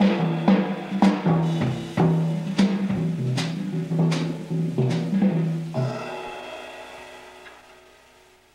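Drum kit played with mallets: a quick run of tom-tom strokes at a few shifting pitches, mixed with cymbal strikes. The playing stops about six seconds in and the drums and cymbals ring and fade away.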